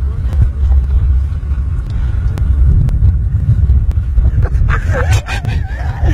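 A loud, uneven low rumble from a large open-air fire of burning drugs close behind the microphone.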